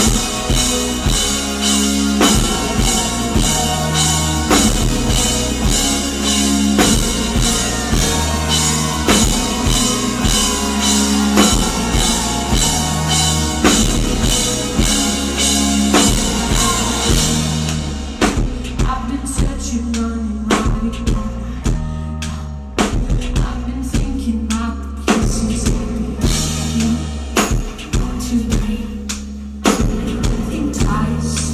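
Live rock band playing a song: drum kit, bass guitar and a singer. About two-thirds of the way through the cymbal wash drops out and the music thins to drums and bass.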